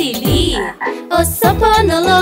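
Cartoon frog croaking over a children's song backing track, with a brief dip in the music a little before the middle.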